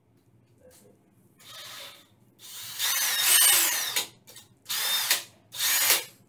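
DeWalt cordless drill run in short trigger bursts, its motor whining up and back down each time: about four bursts, the longest about a second and a half near the middle.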